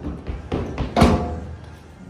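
Pole vault approach and takeoff: quick steps on the runway, then a loud knock about a second in as the pole plants in the box, with a short ring after it.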